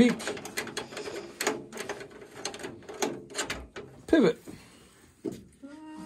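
Light metallic clicks and clanks as a World War II Ford jeep's headlight is loosened and pivoted on its mount so it can be turned back to light the engine. The clicking is busiest in the first few seconds and then thins out.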